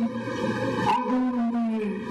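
A man orating through a public-address system, his voice held in long, drawn-out syllables.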